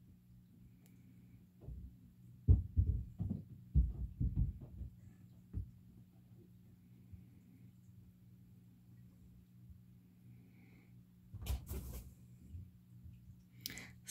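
Muffled low thumps and bumps in a quiet room, a cluster of them about two to six seconds in and another shortly before the end, over a faint steady low hum.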